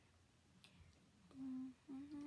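Near silence, then a young woman's short closed-mouth 'mm' hum on one steady pitch, a stifled laugh, about two-thirds of the way in, with another starting at the very end.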